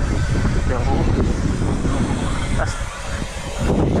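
Wind noise on the microphone as a bike rolls fast over an asphalt pump track, with the hum of the tyres on the surface underneath. The rumble eases briefly about three seconds in.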